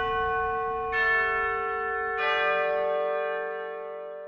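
Bell chimes ending the background music: struck bell tones ring out, a new one joining about a second in and another a little after two seconds, all sustaining together and then fading away near the end.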